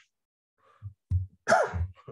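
A man's voice in a pause between sentences: near silence for most of the first second, then a few short, low vocal sounds and a brief clipped syllable.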